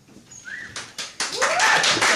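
Audience applause and cheering: a few scattered claps about a second in, swelling into dense clapping with whoops over it.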